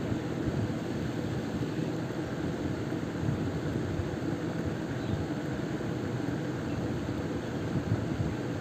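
Steady low background noise with no distinct events, a constant hum-like hiss such as room or fan noise picked up by the microphone.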